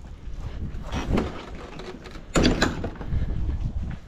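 A white vinyl fence gate being handled and pulled shut: a light knock about a second in, then a louder rattling clatter of the gate and its latch a little past halfway.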